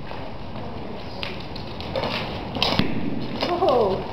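A horse walking on arena footing, its hooves giving irregular knocks and thuds that begin about a second in. A short voice rises and falls near the end.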